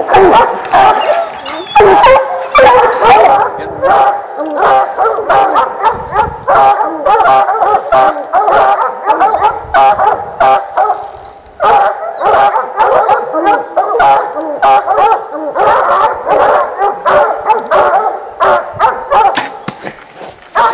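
A pack of bear hounds baying almost without pause at a treed black bear, with a short lull about halfway through; the steady treed bay tells the hunters the bear is up a tree. One sharp click near the end.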